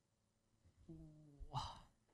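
A soft, brief hummed 'mm' from a person's voice, followed by a short breathy sigh, as someone pauses to think before answering.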